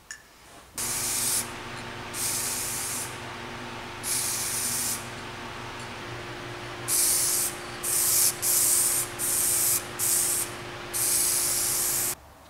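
Aerosol spray-paint can (Spray.Bike) hissing on and off onto a steel bike frame in about nine short bursts, each half a second to a second long and closer together in the second half. A steady low hum runs beneath.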